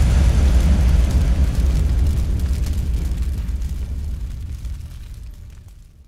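Deep cinematic boom rumbling away and fading steadily to silence over about six seconds, with faint crackling above it.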